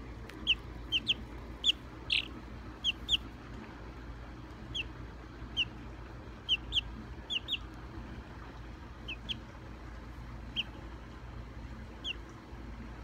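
Buff Orpington chick peeping: about sixteen short, high, falling peeps at irregular intervals, the loudest in the first three seconds.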